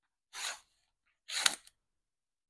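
Scissors cutting the shrink-wrap plastic on a sealed trading-card box, in two short cuts about a second apart, the second with a sharp snip.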